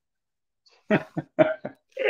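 A man laughing in four short, quick bursts after about a second of silence, heard over a video call.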